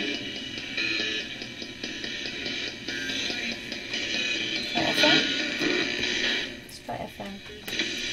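Ghost box: a RadioShack 12-150 radio sweeping through stations, played through a guitar amp. It gives a constant hiss of static broken by clipped fragments of broadcast voices and music. The sound thins and briefly drops out about seven seconds in.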